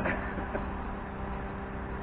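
A steady low mechanical hum that holds one pitch throughout, like a motor running, over a low background rumble.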